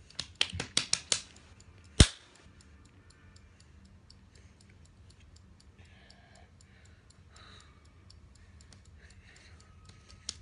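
A phone's countdown timer ticking rapidly and evenly as it runs. Near the start there are a few sharp clicks, then one loud knock about two seconds in.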